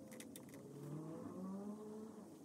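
Faint motor vehicle engine accelerating, its pitch rising steadily over about a second and a half, with a few light clicks near the start.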